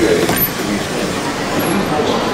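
Cabin noise of a moving Walt Disney World Mark VI monorail car, a steady rumble and hiss, with faint passenger voices.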